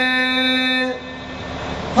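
A kirtan singer's long, steady held note, which stops about a second in. A soft hiss follows and grows louder, an in-drawn breath at the microphone before the next line.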